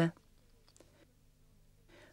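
Near silence with a faint steady low hum and a few faint clicks, the tail of a narrator's voice cutting off right at the start.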